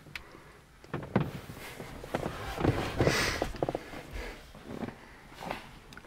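Scattered small clicks, knocks and a short rustle about three seconds in: handling noise of a camera being moved around inside a parked car's cabin, with clothing and seat fabric rubbing.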